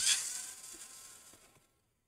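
Small electric precision screwdriver whirring as it backs out a motherboard screw, fading out after about a second and a half.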